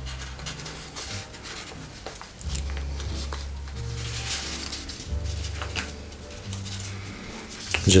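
Background music with a low bass line changing note every second or so, under the dry crinkling and rustling of acrylic-painted printing paper being creased and pushed into an origami reverse fold by hand.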